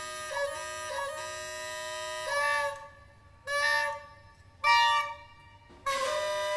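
Soprano saxophone improvising: a held phrase with a few pitch changes for about three seconds, then short, separate notes with near-silent pauses between them.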